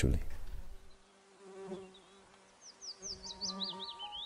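Honeybee buzzing, a low hum that comes and goes from about a second and a half in. Soft bell-like music notes and high chirps enter near the end.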